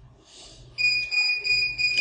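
A steady, high-pitched electronic beep, starting just under a second in and holding for about a second and a half.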